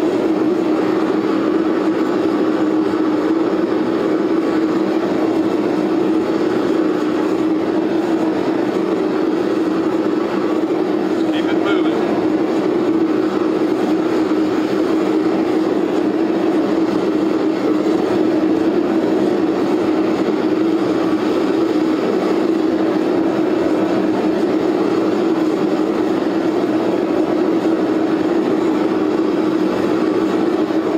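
Propane forge burner running with a steady rushing noise and a low hum, heating a Damascus knife blade to quench temperature.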